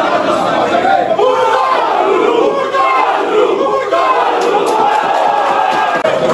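A football team in a dressing-room huddle shouting together as one loud group, a pre-match rallying cry of many overlapping men's voices.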